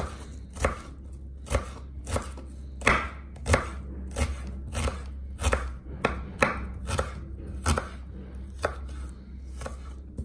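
Knife dicing onion on a board, about fifteen chops at roughly one and a half a second at a slightly uneven pace, over a low steady hum.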